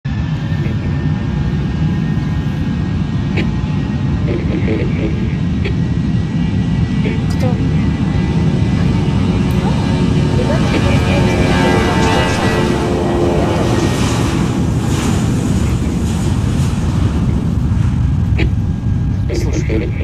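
Jet airliner taking off, its engines making a loud steady low roar. A higher whine of several tones swells and shifts in pitch midway through, then fades back into the roar.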